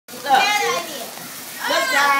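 Excited high-pitched voices exclaim twice over the fizz of birthday cake fountain sparklers burning.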